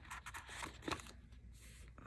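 Faint peeling and rustling of a paper planner sticker as it is lifted and repositioned on the page, with a few light clicks in the first second.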